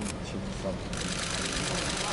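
Arena crowd noise with voices over a steady low hum, rising about halfway through as the snatch is lifted overhead, leading into cheering.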